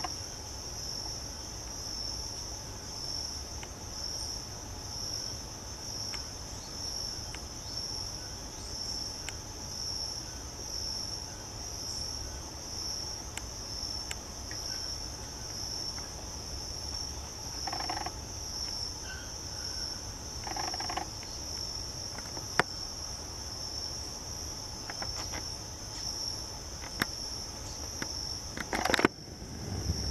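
Insects chirring: a steady, high-pitched pulsing trill over a low background rumble, with a few faint clicks and a couple of brief lower sounds partway through.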